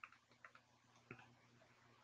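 Near silence with three faint, short clicks: a pen stylus tapping on a tablet screen while drawing.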